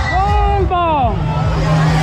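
Loud DJ sound-system music with heavy bass. A voice-like pitched sample arcs up and then glides down over about a second, then a held low note cuts off abruptly at the end.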